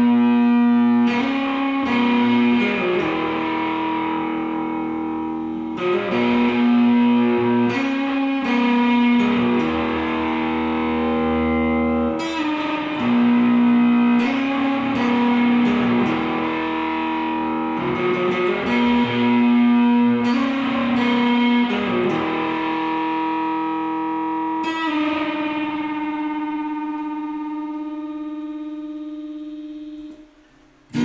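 Semi-hollow Epiphone electric guitar playing an instrumental passage without vocals: a ringing chord-and-melody phrase that repeats about every six seconds, thinning out and fading near the end.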